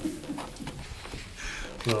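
Soft chuckling from a few people in a meeting room, with a voice starting to speak through a laugh near the end.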